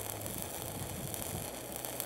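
Stick-welding arc crackling steadily as a 5/32-inch electrode at 130 amps burns the hot pass around a pipeline joint, run hot to burn out the trash.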